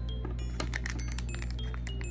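A plastic-foil blind-bag wrapper crinkling and children's scissors snipping it open, a run of short crisp clicks and crackles, over light chiming background music.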